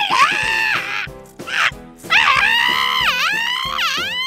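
Two long, high-pitched screams that waver up and down in pitch, a short one at the start and a longer one from about halfway, over background music.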